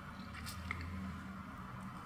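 A quiet pause between a man's words: low room hum with two faint mouth clicks about half a second in.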